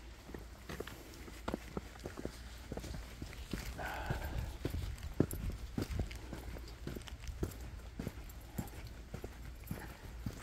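Footsteps on a dirt forest trail: an irregular run of soft steps over a low, steady rumble.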